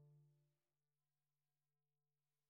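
The last soft piano chord of a piece dying away in the first half second, then near silence.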